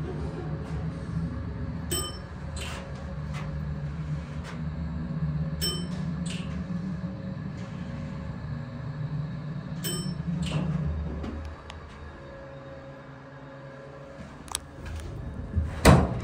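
Toledo hydraulic elevator car travelling, with a steady low hum that stops about eleven or twelve seconds in as the car comes to rest, and a few short ticks along the way. Near the end comes a click, then a sharp, loud click as the metal cabinet door in the cab wall is pulled open.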